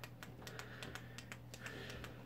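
Faint, irregular light clicks, several a second, over a low steady hum.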